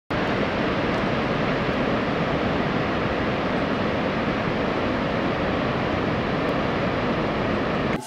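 Steady rushing noise like wind, used as a sound effect under a title card. It starts abruptly and cuts off suddenly near the end.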